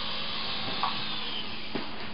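Toy radio-controlled helicopter's small electric motor and rotor blades whirring steadily, with a short light knock near the end.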